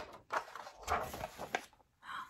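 Page of a hardcover picture book being turned: a few quick rustling swishes of paper over about a second and a half, with small clicks.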